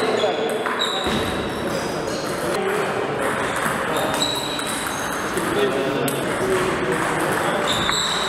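Table tennis rally: the ball clicking back and forth off the paddles and the table in a large, echoing hall, over a steady background of indistinct voices.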